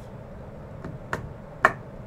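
Three short, sharp clicks over a low room hum, the last and loudest about a second and a half in.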